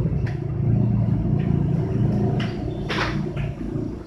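An engine running steadily with a low hum, a little louder in the middle. A few short scratchy strokes lie on top, the strongest about three seconds in, fitting a marker writing on a whiteboard.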